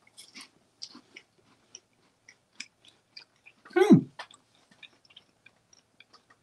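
Crispy cream wafers being chewed: scattered small, sharp crunches. A single short falling vocal 'mm' comes about four seconds in.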